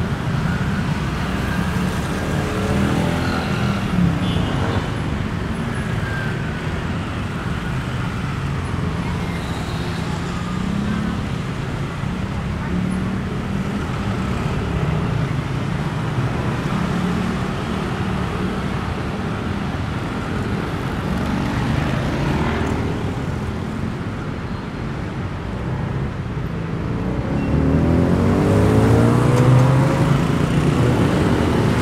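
Heavy city road traffic of cars and motorbikes passing steadily close by. Near the end, a nearby engine rises in pitch and gets louder as the vehicle accelerates.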